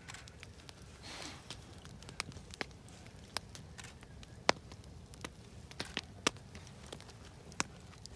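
Faint hand-work sounds of skinning and plucking game: a knife working on a muskrat's hide, with duck feathers being plucked nearby. Scattered sharp little clicks and snaps come at irregular intervals, with a short rustle about a second in.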